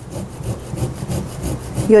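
Frozen ginger root being grated on a metal hand grater: quick, rhythmic rasping strokes, several a second.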